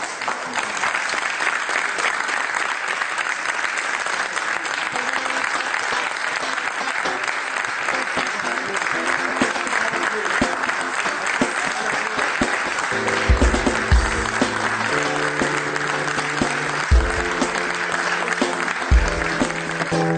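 Audience applause, steady throughout. About two-thirds of the way in, a closing theme tune with a heavy bass beat comes in under the applause.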